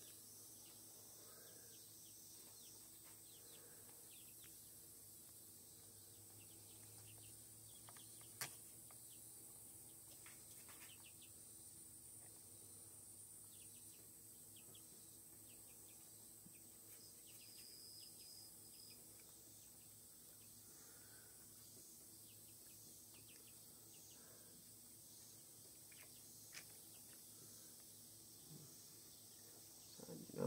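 Near silence: faint outdoor background hiss, with one brief click about eight seconds in and a smaller one near the end.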